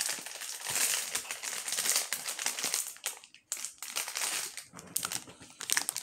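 Crinkling of a plastic-film Hot Wheels Mystery Models blind bag being handled and squeezed in the hands, with a brief lull a little past halfway.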